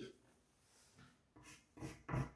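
Chalk writing on a blackboard: a few short, faint scratching strokes, starting about a second in.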